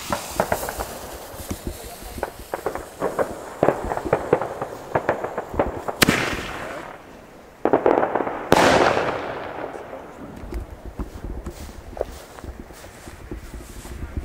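Fuse of a 30 mm single-shot shell tube (Bombenrohr) crackling and fizzing for about six seconds, then the lift charge fires with a sharp bang. About two seconds later the shell bursts in the sky with a louder bang and a long echoing tail that fades out.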